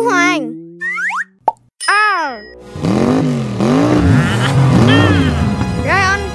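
Edited-in cartoon sound effects over children's music: a quick rising whistle, a sharp pop, then a falling slide-whistle glide, followed by a run of bouncing rising-and-falling tones.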